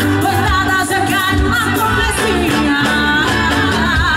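Live forró band playing loudly, a woman singing lead over accordion, electric guitar and drums.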